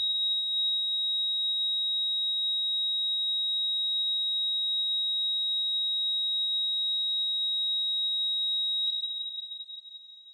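A steady, high-pitched electronic tone held unchanged for about nine seconds, then fading out near the end.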